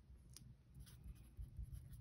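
Faint strokes of a felt-tip marker writing on paper: a few short, light scratches spread through the moment.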